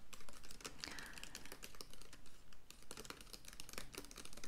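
Typing on a laptop keyboard with long fingernails, a quick, irregular run of light clicks.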